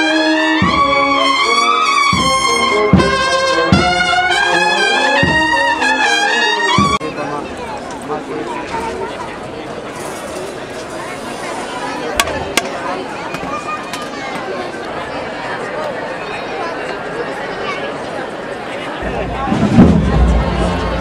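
A brass band plays a slow processional march, with trumpets and tubas over a steady bass-drum beat about every three-quarters of a second. About seven seconds in the music cuts off abruptly, giving way to the murmur of an outdoor crowd with a couple of sharp clicks, and a loud low thud at the very end.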